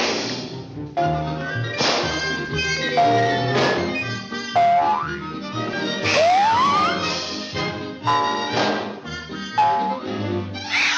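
Orchestral cartoon score playing a busy action cue with no dialogue. Sharp crashes come about every two seconds, between short held high notes, and a little past halfway a pitch slides upward.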